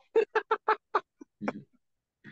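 A person laughing: a quick run of about seven short ha-ha pulses over a second and a half, then it stops.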